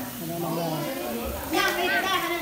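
Several people talking over one another, adults and children mixed, with a voice rising louder near the end.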